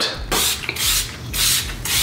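Handheld pump-spray bottle of makeup mist spritzed at a face: several short hissing sprays, about two a second.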